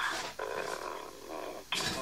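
A man's voice making a drawn-out, wordless hesitation sound between sentences. Clear speech resumes near the end.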